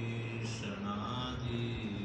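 Men chanting a Sanskrit devotional hymn in long, held notes.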